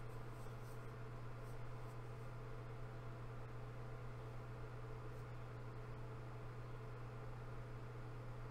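Quiet room tone: a steady low hum under faint even background noise, with a couple of faint clicks.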